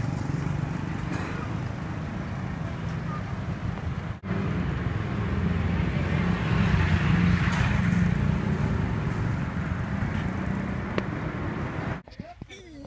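Busy street traffic with motorbikes and cars passing, a dense steady din that swells about two-thirds of the way through. It breaks off for a moment about four seconds in.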